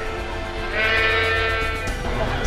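Dairy calf separated from its mother bawling: one long, steady call starting just under a second in, over background music.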